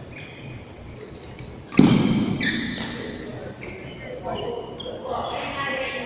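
A badminton racket strikes a shuttlecock with one loud smack about two seconds in, echoing around the sports hall, followed by a few short high squeaks or pings. Voices are heard near the end.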